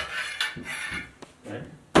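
Half-inch steel EMT conduit clanking and scraping in a hand conduit bender as a bend is tweaked by hand, with a sharp metallic knock near the end.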